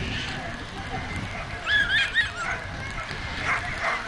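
Whippets waiting in the starting boxes yelping with excitement, a quick run of about three high-pitched yelps about two seconds in.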